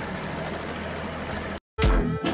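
Bass boat's outboard motor running steadily under water and wind noise, cut off suddenly about one and a half seconds in. After a brief silence, music starts near the end.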